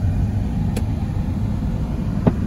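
Low, steady rumble of a car moving slowly, engine and road noise heard from inside the cabin, with a faint click a little under a second in.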